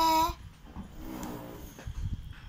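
A short, high-pitched vocal sound held on one note for about a third of a second, then fainter pitched vocal sounds about a second in.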